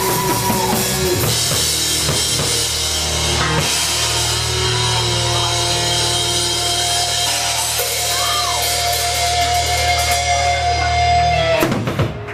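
Live rock band with vocals, guitar and drums playing the closing bars of a song: a long held note through the second half, then the music cuts off sharply just before the end.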